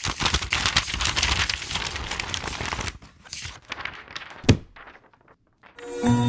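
Paper rustling and crinkling, dense for about three seconds and then thinning into scattered crackles, with one sharp click about four and a half seconds in.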